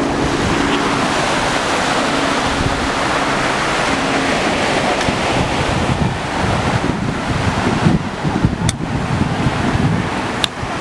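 Ocean surf breaking on a sandy beach, a steady wash of waves on the shore, with wind buffeting the microphone, gustier in the last few seconds.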